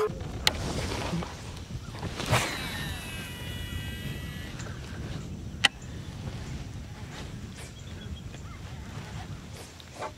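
A fishing cast with a baitcasting rod and reel: a swish about two seconds in, then the reel's spool whirring as line pays out for about two seconds, and a single sharp click near the middle. A low steady rumble of wind runs underneath.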